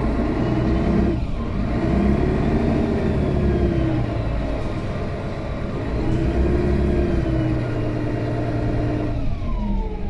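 Mercedes-Benz Citaro O530G articulated bus's OM457hLA straight-six diesel engine and Voith automatic gearbox under way, heard from inside the passenger cabin. The engine note climbs and drops back several times as the gearbox shifts, with one change about a second in, over a steady low drone.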